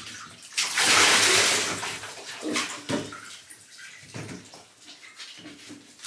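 Water splashing in a bathtub while a small dog is shampooed, with one loud rush of splashing water lasting about a second and a half near the start, then quieter, scattered rubbing and splashing as wet fur is lathered by hand.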